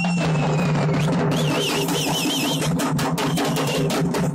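A troupe of dhol drummers beating a fast, dense, continuous roll of strokes. A high whistle is blown over the drumming, falling in pitch in the first second and warbling for about a second near the middle.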